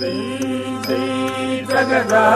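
Carnatic vocal chanting of rhythmic drum syllables ("ta-di") over a steady low drone, with ringing metallic strikes now and then.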